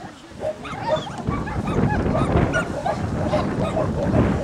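A small dog yapping repeatedly in quick, short barks, with a low rumble underneath from about a second in.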